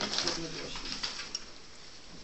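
Meeting-room background: a low, brief murmur of a voice near the start, then rustling of papers around the table.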